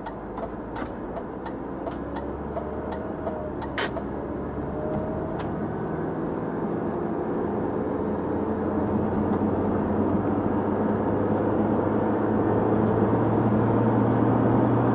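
Inside the cabin of a 2005 Audi A4: the turn-signal indicator ticks about three times a second and stops about four seconds in. Engine and road noise then grow steadily louder as the car accelerates.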